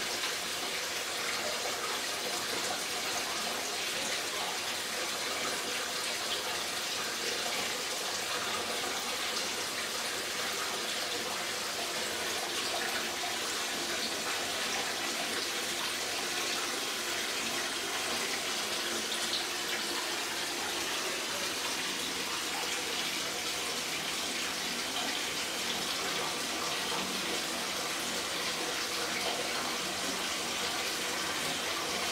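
Water running from a tap into a corner spa bath as it fills, a steady rushing splash.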